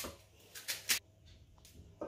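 Kitchen knife slicing through a raw onion held in the hand: a few short cuts in the first second, then near quiet.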